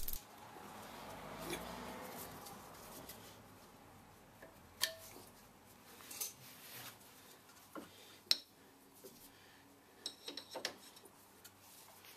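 Faint metallic clicks and rattles as the handbrake cable is worked free of its mounting points on a Ford Mondeo Mk4's rear brake caliper: a few sharp single clicks, then a quick run of small clicks near the end.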